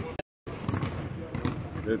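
Basketballs bouncing on a hardwood court, a scattering of irregular sharp knocks. The sound drops out completely for a moment about a quarter of a second in.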